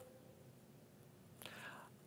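Near silence: faint room tone, with a soft, short breath about one and a half seconds in.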